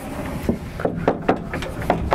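A heavy wooden pocket door sliding across a doorway, with a string of irregular knocks and clicks from about half a second in.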